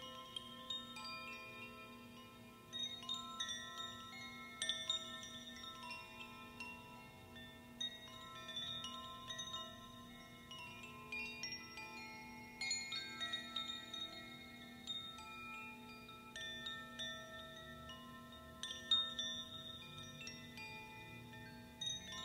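Two hand-held bamboo-cased wind chimes gently rocked, their inner rods struck at irregular moments so that clusters of bright, overlapping tones ring and fade. Beneath them runs a steady low drone.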